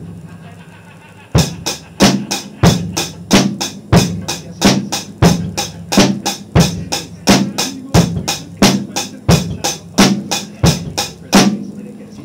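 A drum kit played in a steady beat: an even run of hi-hat strikes with bass drum hits falling together with some of them, the basic beginner pattern being demonstrated. It starts about a second and a half in and stops shortly before the end.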